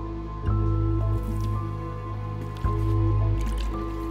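Slow background music of low sustained notes, with the wet strokes of a paintbrush daubing paint onto a wooden door.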